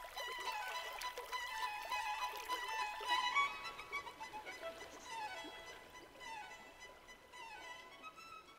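Background music: a violin playing a melody with repeated falling runs, growing quieter toward the end.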